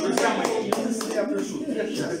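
Scattered applause from a small audience in a room, several hands clapping unevenly, mixed with voices talking.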